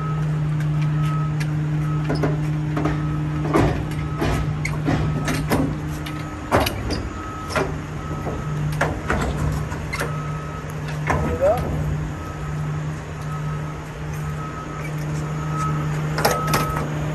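A diesel road tractor idling steadily while the trailer's metal tarp-crank arm is worked, giving repeated clanks and rattles of metal on metal as the tarp is rolled over the load. A faint short beep repeats about once a second.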